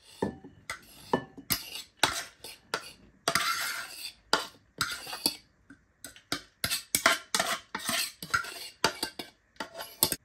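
Plastic food-processor bowl clattering and knocking against a ceramic dish as crushed chickpeas are tipped and scraped out of it. The knocks are irregular and many, with a longer scrape about three seconds in.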